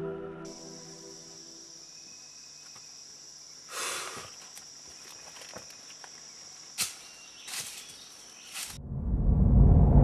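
Film soundtrack: music dying away, then a steady high-pitched insect chirring with a few sharp clicks. Near the end a loud low rumble swells up.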